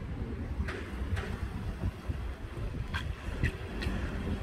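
Wind buffeting the microphone over the low sound of a car driving slowly past, with a few faint ticks.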